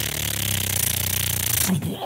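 A man making a steady buzzing, hissing sound with his mouth for about two and a half seconds, a sound effect for a phone going off nonstop with incoming texts.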